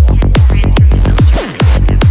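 Progressive goa trance music from a DJ set: a fast, driving electronic kick-drum beat with a rolling bassline. About one and a half seconds in, a falling sweep leads into a brief break, and then the beat comes back.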